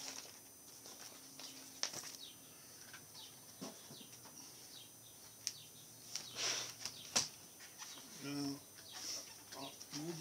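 Computer mouse clicks, then a keyboard slid across a wooden workbench and set down with a sharp knock about seven seconds in.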